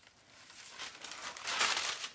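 Backing sheet of inkjet printable heat transfer vinyl crinkling as it is peeled off a freshly heat-pressed towel, growing louder toward the end.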